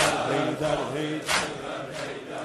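Male voices of a Shia mourning chant (noha) trailing off between lines, with one sharp chest-beating slap a little past halfway.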